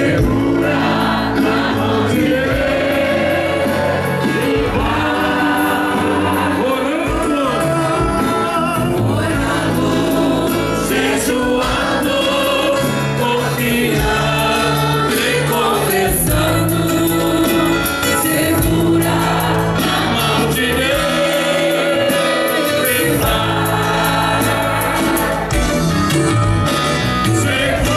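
A large crowd singing a Christian hymn together, with amplified musical accompaniment and a steady bass line.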